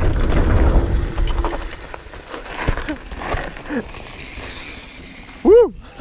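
Mountain bike riding down a dirt trail: wind buffeting the camera microphone and tyre and frame rattle, loud for about the first two seconds, then dying down as the bike slows. A loud voice calls out near the end.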